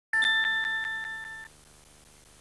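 Bright electronic chime chord of a TV news title sting, pulsing about five times a second and fading, then cut off suddenly after about a second and a half. A faint steady hum follows.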